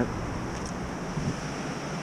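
Steady rush of a fast river running high through whitewater, with wind on the microphone.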